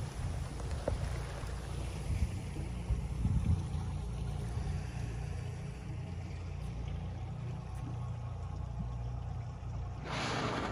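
A boat's engine idling, a steady low rumble, with a few small bumps a couple of seconds in.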